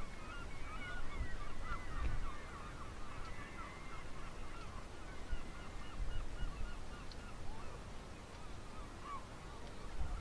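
A dense chorus of many short calls from a flock of seabirds, thinning out near the end, over a low rumble.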